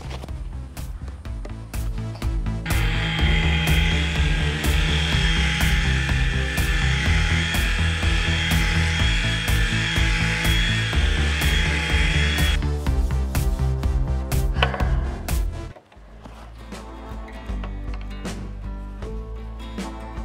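Background music with a steady beat throughout. From about three seconds in until about twelve and a half seconds, a Ryobi cordless orbital sander runs over lacquered timber, sanding off the old finish: a steady hiss with a thin high whine.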